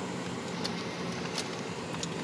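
Car running at low speed, its engine hum and road noise heard from inside the cabin, with two faint clicks in the middle.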